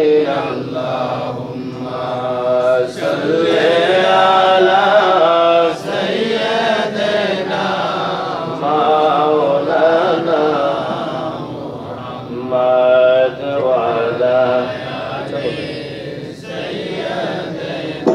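A man chanting a devotional song into a microphone, in a slow melody with long held notes.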